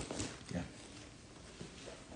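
A few soft knocks and rustles as a fabric bag is handled, then a faint steady background noise.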